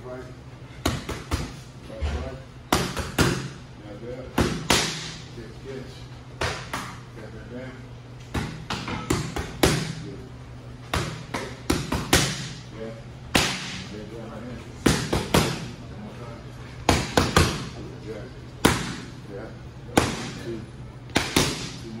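Boxing gloves landing on focus mitts: sharp slaps, some single and some in quick combinations of two to four, every second or two, each with a short echo.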